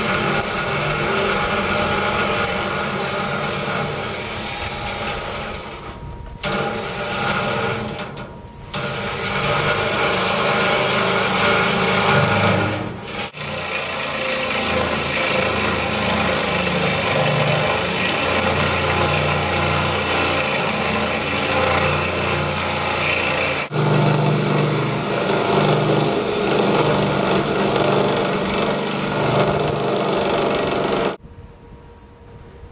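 Electric reciprocating saw cutting through rusted structural steel plate, running steadily with the blade chattering in the cut. It stops and restarts briefly a few times.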